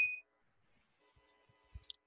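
Near silence after a man's voice trails off at the very start: only faint room tone with a brief faint tick near the end.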